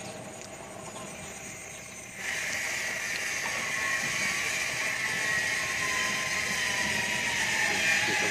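A steady, high-pitched hiss or buzz starts abruptly about two seconds in and holds level, over a faint low hum.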